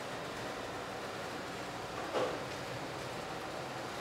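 Steady hiss of room noise, with one faint, brief sound about two seconds in.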